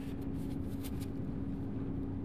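Steady mechanical hum with one constant low tone, with faint light rubbing of a tissue wiping a glass cuvette dry.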